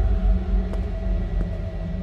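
Dark cinematic soundtrack: a low, steady rumble under a held drone of several tones, with faint ticks about every 0.7 seconds.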